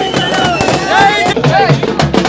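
Crowd voices shouting over a dense, rapid clatter of drum strokes from a street drum band; near the end the voices drop away and the drumming carries on alone.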